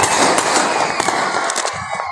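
Fireworks going off: a dense crackle with several sharp bangs scattered through it.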